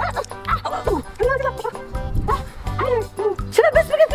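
A girl whimpering and crying out in pain in short rising-and-falling whines, as toy bricks stuck to her hand are pulled off, over background music with a steady beat.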